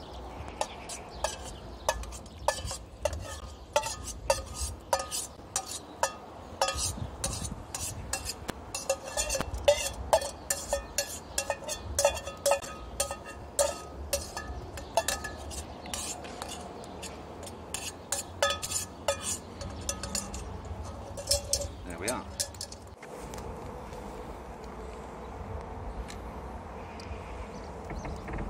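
Metal spoon clinking and scraping against a stainless steel camping pot and bowl as food is dished out: a quick, irregular run of sharp, lightly ringing clinks that dies away near the end.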